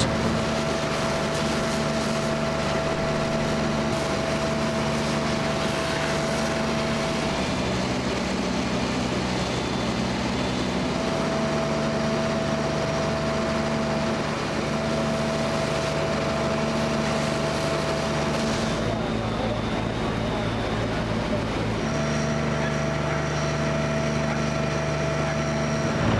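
Fire apparatus engines and pumps running steadily: a constant droning hum with a steady higher tone over it. The pitch and mix change abruptly a few times.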